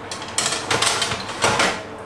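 Metal baking tray sliding into an oven on its rack, scraping and rattling several times.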